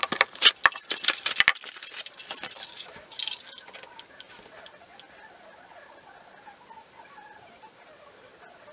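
Plastic hair-colour bottles and packets being set down and shuffled on a hard counter: a quick run of clicks, knocks and rustling that dies away after about three and a half seconds, leaving only faint background sound.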